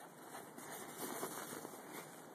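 Faint, uneven crunching of steps through snow, coming in small irregular pulses.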